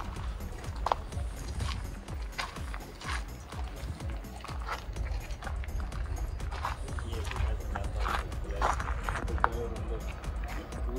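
Outdoor crowd ambience: wind rumbling on the microphone, with scattered voices of people around.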